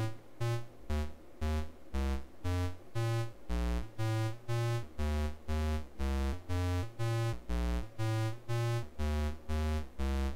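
DIY modular synth oscillator gated through a vactrol, playing a sequencer pattern of bright, buzzy notes, about two a second, that step up and down in pitch. Each note swells in gently rather than starting sharply, because the attack on the attack-release envelope driving the vactrol has been slowed.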